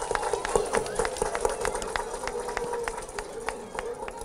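Scattered applause from a crowd: separate hand claps, several a second, over a faint steady tone, thinning out near the end.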